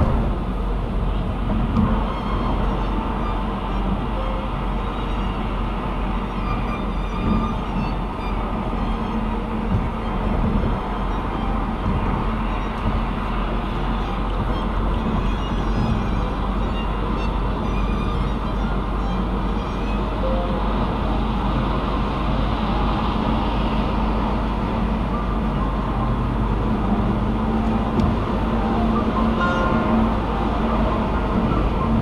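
Steady road and tyre noise inside a car's cabin at highway speed, a constant rumble with a low hum.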